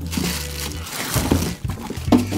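Plastic packaging and a cardboard box rustling and crinkling as they are handled, in an even crackly stream that dips briefly about one and a half seconds in.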